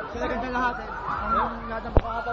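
Several people's voices chattering and calling out over one another, one voice rising and falling in a short call about halfway through, with a sharp click at the very end.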